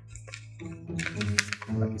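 Padded paper envelope being handled, its paper crinkling with a few sharp crackles.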